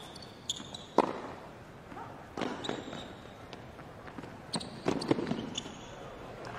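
A tennis rally on a hard court: sharp hits of racket on ball, the loudest about a second in and more near the middle and the end, with brief high squeaks of tennis shoes on the court between them.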